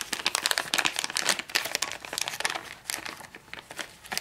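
Clear plastic bags crinkling as they are handled: a dense crackle that thins out near the end.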